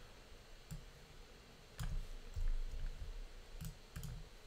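About five faint, scattered clicks of computer keys and mouse buttons, some with a soft low thud, as text is edited.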